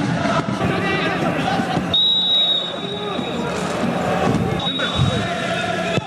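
Football referee's whistle, two steady high blasts, one about two seconds in and another near five seconds, signalling the end of the first half. Voices shout in the stadium around it.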